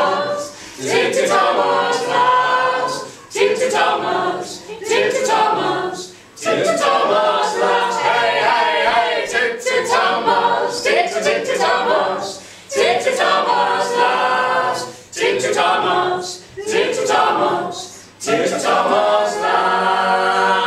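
Four-voice mixed a cappella group, two women and two men, singing a Welsh folk song in harmony without instruments, in phrases of a few seconds broken by short breaths.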